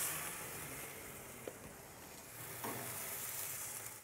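Meat sizzling on a grill rotisserie: a steady, quiet sizzle with two faint pops.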